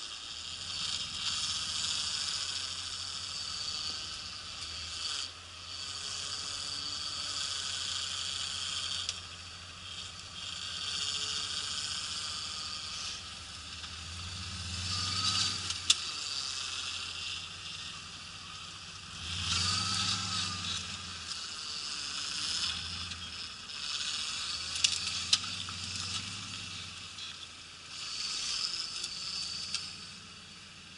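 Rock-crawling buggy's engine revving in surges every few seconds as it climbs over rocks, with a steady hiss over it and a few sharp clicks.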